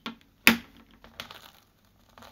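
Frisket masking film being peeled off a painted canvas: a sharp click about half a second in as the edge lifts, then light crackling as the film comes away.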